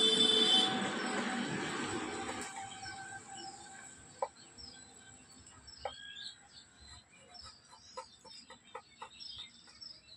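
A rooster crows loudly in the first couple of seconds, then small birds chirp on and off. A few sharp wooden taps sound among the chirps, from a hand chisel working a carved wooden panel.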